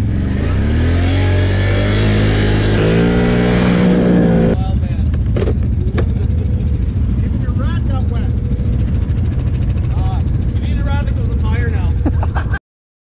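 ATV engine revving hard at full throttle, its pitch climbing steadily as it accelerates, cut off abruptly a little over four seconds in. Then quad engines idling, with brief voices.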